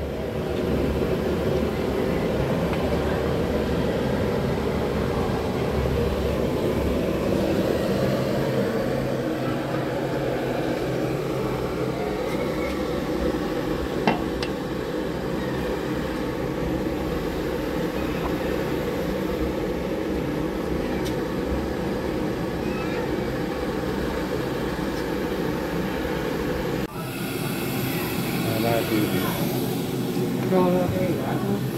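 Gas burner firing steadily under a large aluminium cooking pot, with indistinct voices behind it and a single sharp click about halfway through.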